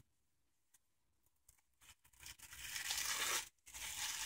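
Old factory shrink-wrap being torn and peeled off a sealed vinyl LP jacket: a crinkly plastic tearing that starts about halfway through, breaks off for a moment and then goes on.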